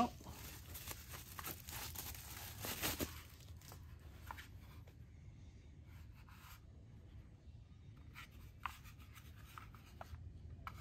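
Plastic bubble wrap rustling and crinkling as it is pulled off a cordless tool battery pack, dense for the first three or four seconds. After that, only a few faint clicks and rubs from the plastic battery being handled.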